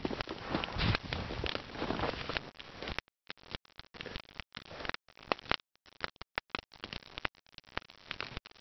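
Wood campfire crackling and popping with scattered sharp clicks. The first three seconds carry a steady rustling noise under the pops; after that there are only separate snaps with gaps between them.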